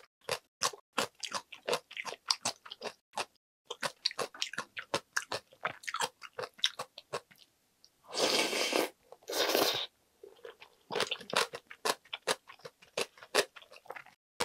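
Close-miked mouth sounds of someone eating ramyeon: a run of quick wet chewing clicks, then two long slurps of noodles and soup from a wooden ladle about eight and nine and a half seconds in, then chewing again.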